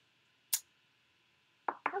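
A single short, sharp click about half a second in, from a clear acrylic stamp block against the craft mat as a rubber-free photopolymer stamp is pressed onto red cardstock.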